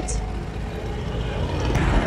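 Riding a motor scooter through city traffic: a steady engine and road rumble that grows louder toward the end.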